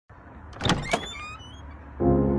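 A front door being unlatched and opened: two sharp clicks about a quarter of a second apart, followed by a few short squeaks.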